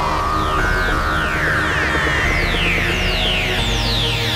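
Hardcore techno at 180 BPM: synthesizer music with repeated falling pitch sweeps over a line that steps upward in pitch, and a deep sustained bass note coming in near the end.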